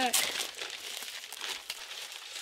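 Plastic wrapper of a small Bandai toy packet crinkling as it is torn open by hand, sharpest just after the start.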